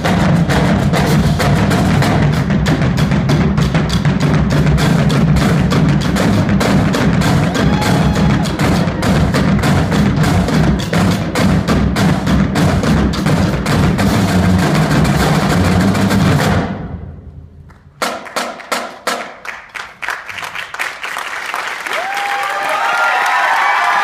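A marching percussion line of bass drums, snare drums and tenor drums playing a fast, dense cadence. About sixteen seconds in it stops abruptly, then comes a run of separate hits with gaps, and near the end voices call out in rising pitch.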